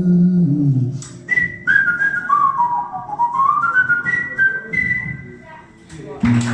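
A person whistling a short blues melody line, clear single notes that step down and then climb back up, after a sung phrase falls away about a second in. Acoustic guitar is faint underneath.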